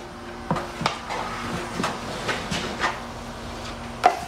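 Drywall taping knife working wet joint compound: a string of short scrapes and clicks as the blade is wiped on the mud pan and drawn across the wall seam, over a faint steady hum.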